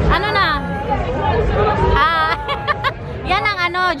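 Excited, high-pitched voices crying out and exclaiming in greeting, in three short outbursts, over the steady babble of a dense street crowd.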